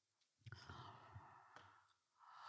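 Near silence: a faint breath from the lecturer into a close handheld microphone, with a couple of soft clicks, starting about half a second in.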